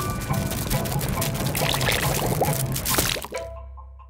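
Animated sound effect of jelly welling up out of a magic picnic basket: a dense, wet liquid noise that stops suddenly about three seconds in, leaving faint music notes.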